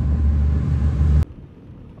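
Steady low rumble of a motor vehicle by the roadside, with a hiss above it. It cuts off abruptly just over a second in, leaving a much quieter, steady hum.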